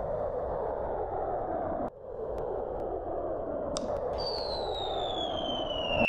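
Cartoon rocket sound effect: a steady rushing hiss, cut off briefly about two seconds in. From about four seconds in, a long whistle falls steadily in pitch as the rocket comes down, leading into an explosion.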